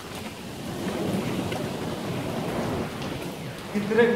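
Steady rushing noise with a low rumble that swells through the middle, then a man's voice breaks in just before the end.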